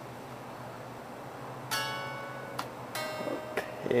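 Solid-body SG-style electric guitar strummed twice: a chord about two seconds in, cut short after under a second, then a second chord about a second later that rings briefly.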